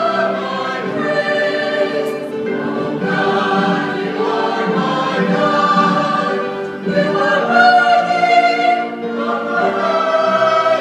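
Church choir singing a hymn in several parts, the voices holding sustained chords that swell and ease.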